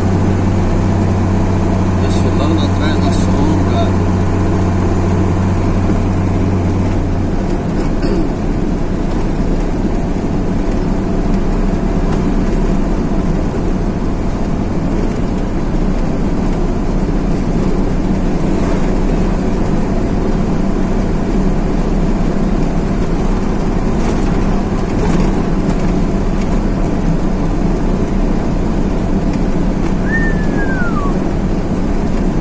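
Truck engine running with tyre and road noise, heard from inside the cab while driving. A deep, steady engine hum drops away about seven seconds in, and the rest stays an even running noise.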